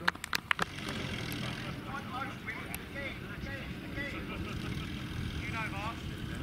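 A few sharp clicks in the first half-second, then a WWII Jeep's four-cylinder engine running low and steady as it drives off, with faint voices in the background.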